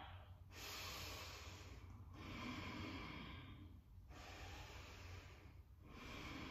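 Faint, slow breathing by a woman, about three breaths each around two seconds long, with short pauses between them.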